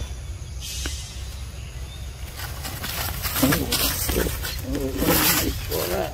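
Macaques giving a run of harsh, raspy calls, starting a little before halfway through and coming in several loud bursts.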